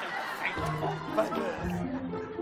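Several voices chattering over one another, with music coming in about half a second in as a run of held low notes.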